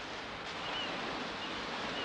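Sea surf washing on the shore: a steady, even rushing sound, with a couple of faint short high chirps.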